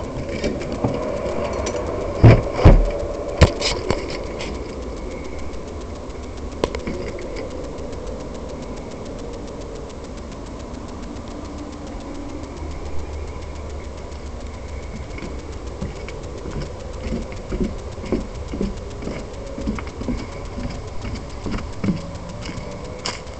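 Sharp knocks and thumps from a door being handled and passed through, the loudest sounds here, then a steady low background rumble. Near the end come short low footfalls at walking pace on leaf-strewn grass.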